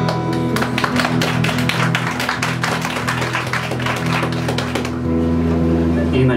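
Audience clapping for about four and a half seconds, over an acoustic guitar sounding softly underneath.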